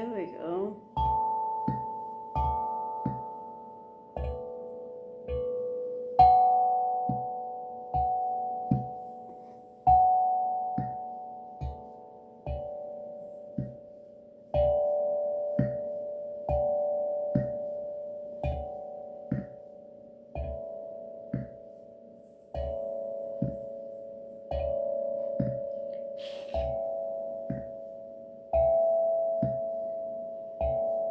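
A 6-inch, 11-note steel tongue drum tuned to D major, struck one note at a time with a rubber mallet. There is a stroke about every second or so, and each note rings and fades before the next, stepping between different notes.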